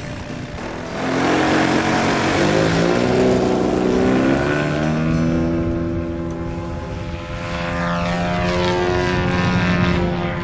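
Propeller engine of a large radio-controlled aerobatic model plane opening up about a second in, its pitch rising as the plane takes off. It then runs steadily at high throttle as the plane climbs away, its pitch shifting as it flies past.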